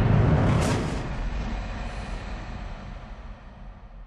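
Logo-animation sound effect: a rumbling sweep with a sharp hit about two-thirds of a second in, then a long rumble that fades steadily away.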